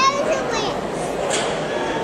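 Background chatter of a crowd, many voices talking at once, children's among them, with a high voice briefly louder right at the start.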